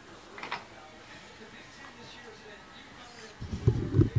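Faint background audio, then from about three and a half seconds in, loud low thumps and rumbling as the camera is picked up and handled.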